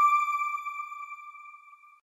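A single ringing chime note from a TV channel's sound logo, loudest at first and then slowly fading out.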